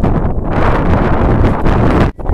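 Wind buffeting the microphone: a loud, steady rumble.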